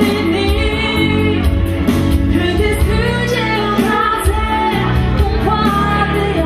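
A live band playing dance music with a lead vocal over a steady beat of bass and drums.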